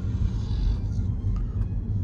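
Steady low rumble of road and tyre noise heard inside the cabin of a car driving along a city street.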